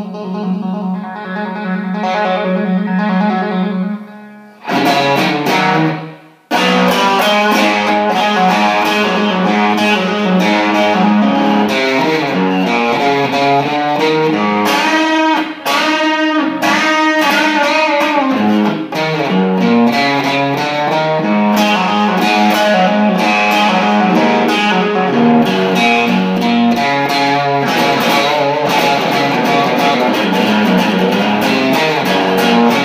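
1979 Fender Stratocaster electric guitar played through an amplifier. A held note fades about four seconds in, then after a short phrase and a brief break the playing runs on continuously, note after note.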